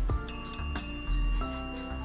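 Background music with a bright bell-like chime struck about a quarter of a second in that rings on, the chords underneath changing a little past halfway.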